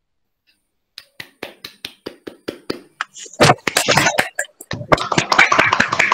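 Applause over a video call. After a second of silence, one person claps steadily about four times a second, and from about three and a half seconds in more people join and the clapping becomes dense.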